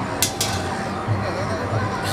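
Overlapping voices of a crowd, with music underneath. Two short sharp clicks come about a quarter second in.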